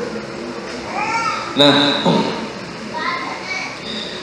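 Children's voices in the hall, with high-pitched calls about a second in and again near three seconds, during a pause in a man's talk; he says a single short word midway.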